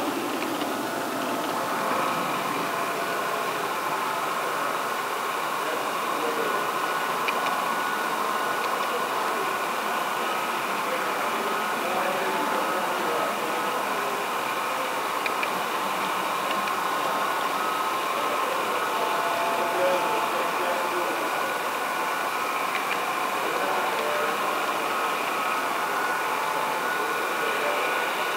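Model train running along the track: a steady whir of the locomotive's motor and wheels on the rails, with a few faint clicks.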